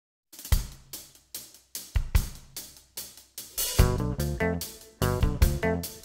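Rhythm-and-blues song intro: a drum kit plays alone, with snare, bass drum and cymbal hits. A little past halfway, bass and guitar come in on a steady groove.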